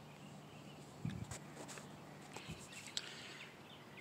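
Quiet outdoor ambience with a faint steady hum and a few soft rustles and light knocks, the clearest about a second in.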